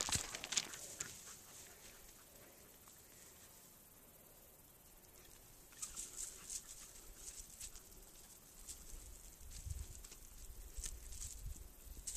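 Faint, scattered ticks and rustles of dry grass and brush as a puppy moves through it, starting about halfway through after a nearly silent stretch. A low rumble, wind or handling on the microphone, comes in near the end.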